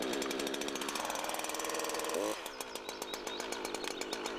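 Husqvarna two-stroke chainsaw running fast with the throttle set halfway after starting. A little past two seconds in, the throttle is hit once: the revs rise briefly, then drop to a lower, steady idle.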